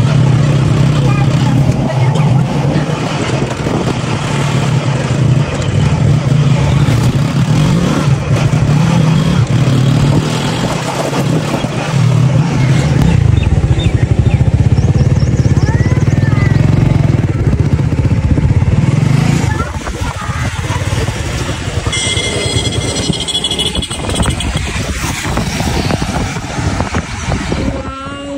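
Motorcycle engine running steadily as the bike rides along, with a low, even hum; it gets quieter about two-thirds of the way through.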